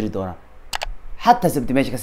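A man speaking, with a quick double mouse-click sound effect from a subscribe-button animation about three-quarters of a second in, during a short pause in his speech.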